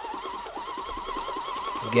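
Electric motor of a Leten Future automatic stroker cup running in one of its stroking modes: a steady whine that wavers up and down in pitch several times a second, over a faint rapid ticking.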